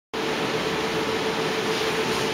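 Steady machine hum with a hiss and a steady mid-pitched tone, even throughout.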